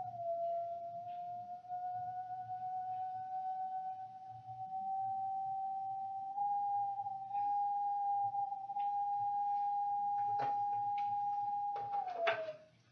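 One long, steady high pure tone, edging slightly up in pitch, with a couple of faint clicks near the end.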